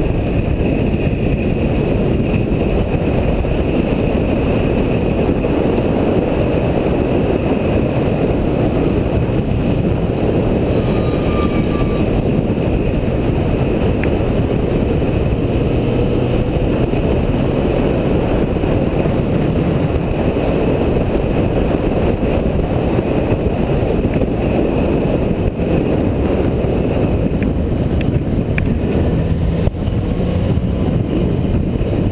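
Motorcycle riding at road speed, heard from a camera mounted on the bike: a steady rush of wind on the microphone over the engine's running noise.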